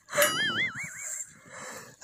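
A high-pitched whine lasting about a second, its pitch wobbling quickly up and down about five times a second.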